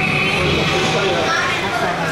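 People's voices talking in an ice rink, with a steady high-pitched tone that cuts off a fraction of a second in.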